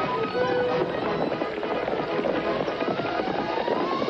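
Horses galloping, a rapid clatter of hoofbeats, under a dramatic music score; a note in the music rises in pitch near the end.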